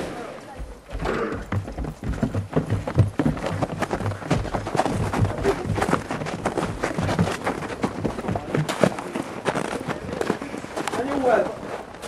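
Hurried footsteps and irregular knocks of several people rushing out and down wooden steps, with indistinct raised voices mixed in.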